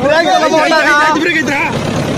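Men talking loudly in Tamil, close by, with a tractor engine running underneath the voices.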